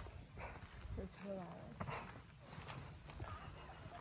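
Quiet outdoor sound of footsteps on a concrete walkway, a few soft scattered steps, with faint voices in the background during the first second or so.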